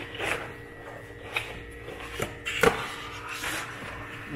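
Handling sounds as a plastic-wrapped metal plaque is pulled out of its cardboard box: a run of rustles and scrapes, the sharpest about two and a half seconds in.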